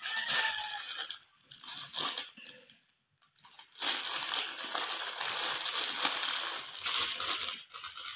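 Clear plastic zip bag crinkling as it is handled and pulled open, with a short pause about three seconds in.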